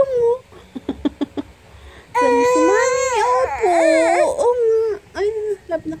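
A toddler vocalizing without words in a whiny, half-crying way. A few short clicks come first, then a loud, wavering, cry-like wail of about three seconds, then a few shorter whimpers near the end.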